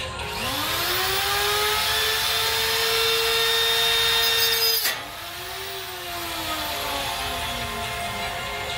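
Handheld angle grinder spinning up with a rising whine and running at a steady high pitch with a loud hiss over it. About five seconds in it cuts off sharply, revs briefly again and winds down with a slowly falling whine.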